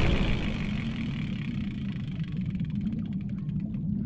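A steady low rumble, engine-like, under a hiss, slowly fading, with a faint fluttering in the second half.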